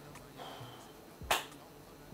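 A single sharp finger snap about a second and a third in, during a quiet pause in the talk.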